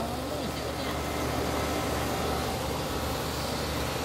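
Steady low rumble of outdoor background noise, with a voice trailing off right at the start and faint voices behind.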